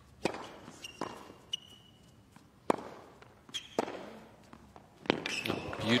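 A tennis rally on a hard court: sharp racket-on-ball strikes and ball bounces about a second apart, with short shoe squeaks between them. Crowd applause and cheering rise near the end.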